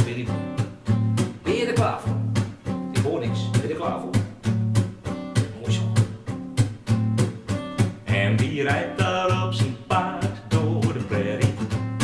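Acoustic guitar strummed in a steady rhythm, sounding chords as the introduction to a song.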